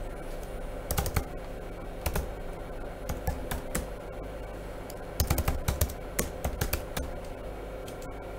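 Typing on a computer keyboard: scattered key clicks in short runs, with a quicker flurry about five seconds in, as a terminal command is entered.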